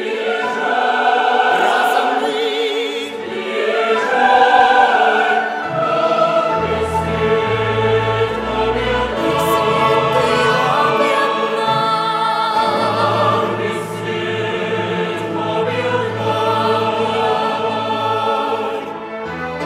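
Choir singing with vibrato over symphony orchestra accompaniment; a low orchestral bass comes in about six seconds in.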